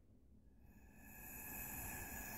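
A breath blown steadily through a drinking straw onto wet alcohol ink on glass: a soft airy hiss with a hollow tone. It starts about half a second in and grows a little louder as the ink is pushed across the surface.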